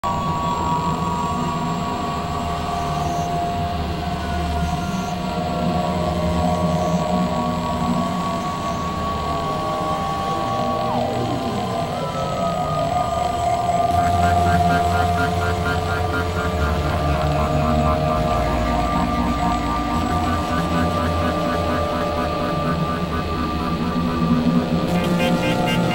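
Experimental electronic drone music from synthesizers: layered steady tones over a low rumble. About eleven seconds in, one tone glides steeply down in pitch. From about fourteen seconds a fast, fluttering pattern of higher tones joins in.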